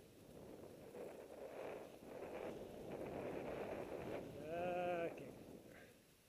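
Skis hissing and scraping through snow as the skier turns between trees. About four and a half seconds in comes a short, wavering voiced cry from the skier, lasting under a second.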